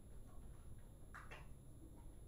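Near silence: room tone with a faint low hum, and two faint short sounds about a second in.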